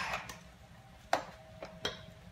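A food processor's motor cuts off and quickly dies away, followed by a few sharp clicks and knocks over the next two seconds as the machine is handled, one of them leaving a faint ring.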